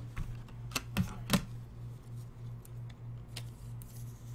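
Trading cards and rigid clear plastic top loaders handled on a desk: a quick run of three light clicks and taps in the first second and a half, another a couple of seconds later, over a faint steady low hum.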